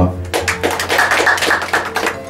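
A round of applause from a small crowd in a room, starting about a third of a second in as a dense run of irregular claps.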